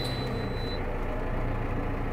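Valtra tractor engine running steadily, heard from inside the cab, with a thin high-pitched tone for about the first second.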